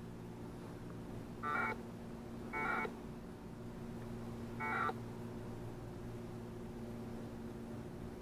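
Three short bursts of 1200-baud packet radio data tones from a 2 m transceiver's speaker, a two-tone warble about a second or two apart. The audio is clean with no static, which shows a good packet link to the Winlink gateway. A steady low hum runs underneath.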